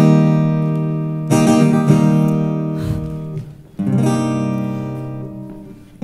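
Slow acoustic guitar music: three strummed chords, each left to ring and fade away. The first is the loudest, struck just before the start, and the others come at about one and a half seconds and four seconds in.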